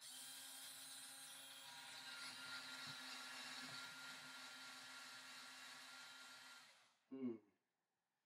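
Cordless drill spinning a bit in a home-made 3D-printed router jig against MDF, with a steady motor whine that starts abruptly and runs about seven seconds before it winds down and stops. The makeshift router does not cut well: the drill 'doesn't seem to like it very much at all'.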